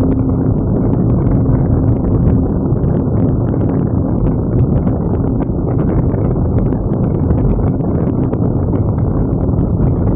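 Car driving, heard from inside the cabin: a steady low rumble of engine and tyres on the road, with many small ticks and rattles throughout.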